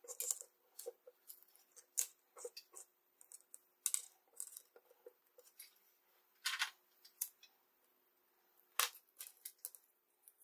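Hands handling insulated wire, heat-shrink tubing and a metal helping-hands clamp: irregular small clicks, taps and short rustling scrapes, with a longer scrape about six and a half seconds in.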